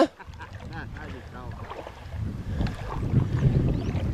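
Low, uneven rumble of wind buffeting the microphone, growing louder in the second half, with a faint voice in the first second or so.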